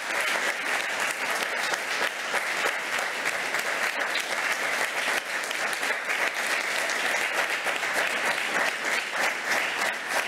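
Audience applause in a lecture hall, many people clapping steadily and without a break.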